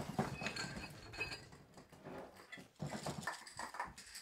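Glass candy jars being handled on a kitchen counter: a run of small clinks, knocks and rattles of glass and lids, with short ringing glass tones about half a second to a second and a half in.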